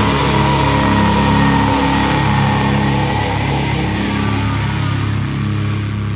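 Distorted electric guitar and bass holding a single chord that rings on with no drums, slowly fading.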